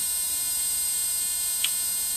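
Steady electrical hum and buzz with a high, constant whine from the running high-voltage flyback and oscillator circuit, with one short faint click near the end.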